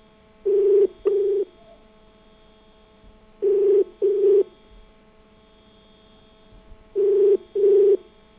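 Telephone ringback tone on an outgoing call, the Indian double-ring cadence: three double rings about three and a half seconds apart over a faint steady line hum. The called phone is ringing and has not yet been answered.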